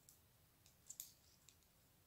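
Faint, light clicks of metal knitting needles touching as a stitch is worked, a handful of soft ticks with the clearest about a second in, otherwise near silence.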